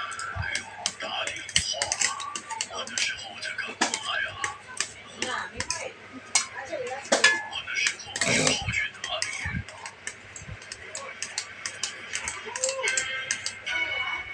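A plastic spoon clinking and scraping against a stainless steel plate while someone eats, with a louder scrape about eight seconds in. Speech and music play in the background.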